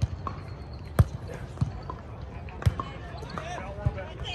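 A volleyball being struck by hands and forearms during a rally: several sharp hits a second or so apart, the loudest about a second in.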